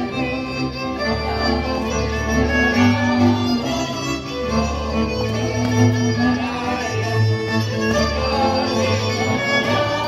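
Fiddle-led folk dance music, violins playing a fast tune over a pulsing bass line.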